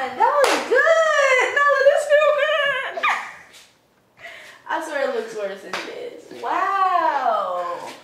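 A woman's high-pitched squeals and wordless cries in a small room, with one sharp snap about half a second in: the crack of a chiropractic neck adjustment.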